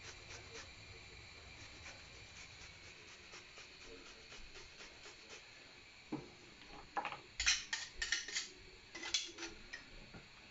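Fresh ginger being grated on a handheld metal grater over a saucepan: a faint, steady run of rasping strokes, about three or four a second. About six seconds in the grating stops and louder knocks and clinks of metal against the saucepan follow.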